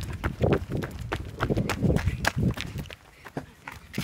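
Quick footsteps on a concrete sidewalk, with handling bumps from the phone being carried; the steps thin out near the end.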